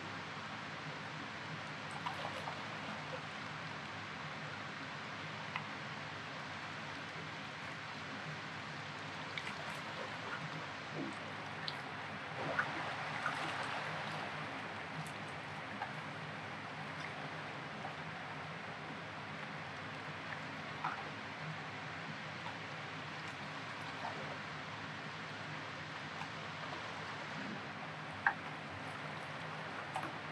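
Steady rushing of flowing river water, with a few faint clicks now and then and a slight swell about halfway through.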